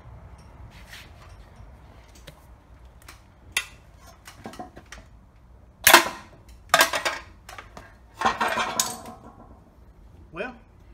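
Steel hammer striking a punch inside the wheel-bearing bore of a Toyota Tundra steering knuckle: light scattered taps and scrapes at first, then sharp metallic strikes about six and seven seconds in and a quick flurry of strikes near the end.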